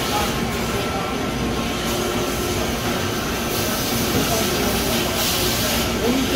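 Steady running noise of a CNC machining center and its auxiliaries: a continuous hum with a hiss over it. The hiss grows louder for a moment about three and a half seconds in and again near the end.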